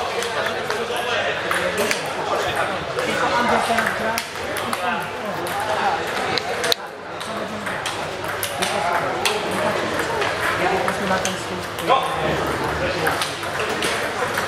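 Table tennis balls clicking off bats and tables in repeated light strikes, from rallies on several tables, over people talking; a shout of "No!" near the end.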